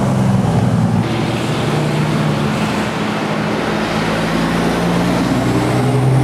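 Loud, steady low mechanical drone under a rushing noise, its pitch wavering slightly.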